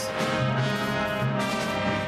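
Orchestral low brass, led by trombones, playing a loud sustained chord with the orchestra.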